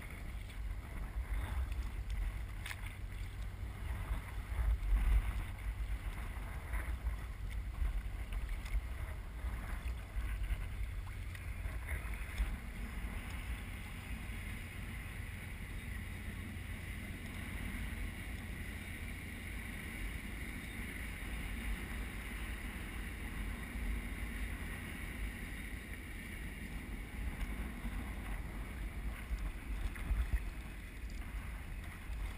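Kayak paddling heard from a camera on the boat: paddle strokes and water splashing against the hull over steady wind rumble on the microphone. About twelve seconds in, a steady, faint hum comes in and stays.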